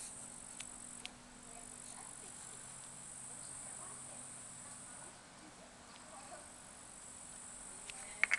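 Insects chirring outdoors, a faint, steady, high-pitched hiss that dips a little about five seconds in, over a faint low hum, with a couple of light clicks in the first second.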